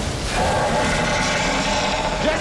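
Heavy splashing and churning of water as a body thrashes in it, loud and continuous, with a steady low tone held underneath.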